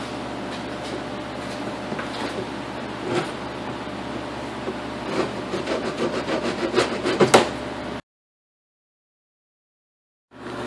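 A hand file rasping along a chipped, sharp hard-plastic lip at the top of a car door, smoothing the edge off, with a run of quick strokes in the second half. The sound then cuts off abruptly.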